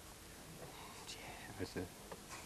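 A lull in conversation with faint, murmured speech and a soft "yeah" near the end.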